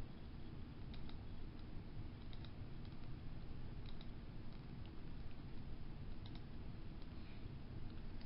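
Low, steady room rumble with a few faint, scattered clicks, about four of them spread over several seconds.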